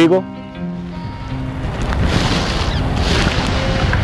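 Wind buffeting an outdoor microphone: a rushing noise with a deep rumble, building from about half a second in and swelling louder in waves through the second half.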